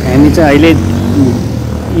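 A person talking, over a steady low hum.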